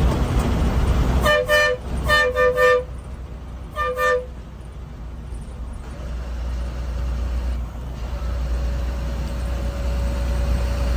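An SETC bus horn honking in short two-note toots: one, then three in quick succession, then one more, all within the first four seconds. Under it runs the steady low drone of the bus engine and road noise as heard from the driver's cabin.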